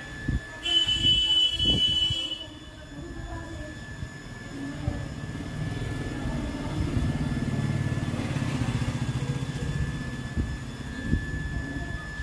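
A vehicle horn sounds once for about a second and a half. Then the low rumble of a passing vehicle builds to a peak about eight seconds in and fades.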